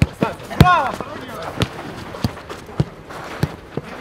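A football being kicked: a series of sharp thuds of boot on ball, roughly every half second, the loudest just over half a second in, with players shouting.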